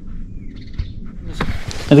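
A faint bird chirp, a short falling note, over a low steady background, followed by a brief hiss just before speech.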